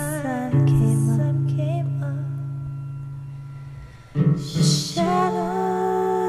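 A slow, gentle song. A woman's voice ends a held note with vibrato, and a low sustained accompaniment note fades away over a few seconds. After a short breathy hiss, the voice comes back in on held notes near the end.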